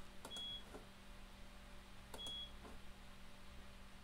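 IBM 3488 InfoWindow display station giving two short high beeps about two seconds apart, each with faint keyboard key clicks around it. This is the terminal's alarm for a keystroke it won't accept in its setup menu.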